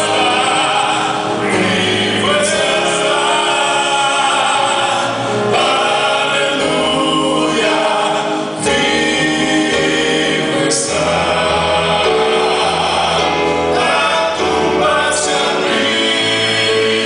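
Six-man male vocal group singing a gospel song in harmony through microphones, in phrases of a few seconds, with electronic keyboard accompaniment.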